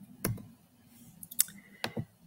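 Three sharp computer mouse clicks, spaced irregularly, as the presenter switches her shared screen.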